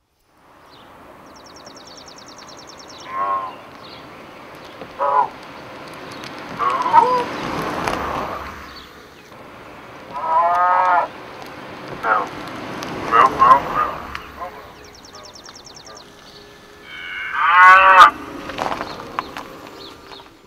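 Recorded cow moos played as a custom car horn from an Adafruit sound board through an amplifier and a loudspeaker fitted to an electric car. There are about eight calls, some short and some long, and the longest and loudest comes near the end.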